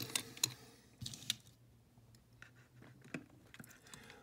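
1:64 die-cast metal model cars being handled and moved on a tabletop, giving a scatter of light, irregular clicks and taps as they touch the table and one another.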